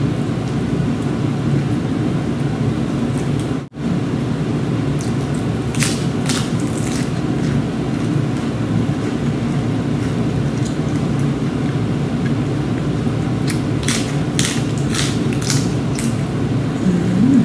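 A person chewing a mouthful of larb close to the microphone, with two spells of crisp crunching clicks, over a steady low hum. The sound drops out for an instant just before four seconds in.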